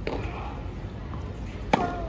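Tennis ball struck by rackets during a rally on a clay court: a faint distant hit at the start, then a loud, sharp forehand strike near the end, followed by a short falling tone.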